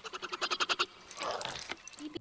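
A fantasy creature's call from a film soundtrack: a fast rattling chatter of about fifteen pulses a second lasting under a second, followed by a short breathy rasp.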